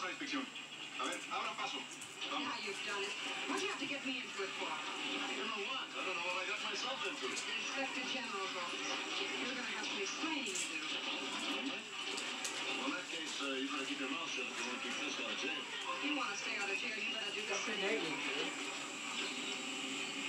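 A television playing in the room: dialogue with music under it, at a steady moderate level.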